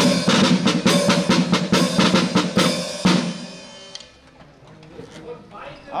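Rope-tensioned marching drum beaten in a rapid run of strokes for about three seconds, then dying away.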